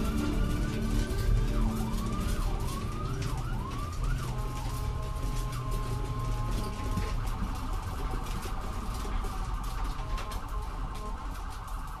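Electronic soundscape with siren-like rising and falling pitch sweeps over a low drone and constant crackle. About four seconds in the sweeps stop and give way to steady held tones and a wavering hum.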